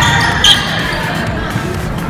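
Volleyball being struck during a rally on a gym court. There is a thud at the start and a sharp sound about half a second in, with spectators' voices echoing in the hall.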